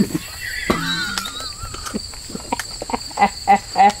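Crickets or other insects drone steadily in rural surroundings. A short sharp knock comes about two-thirds of a second in, and a wavering, falling whistle follows for about a second. Brief laughter comes near the end.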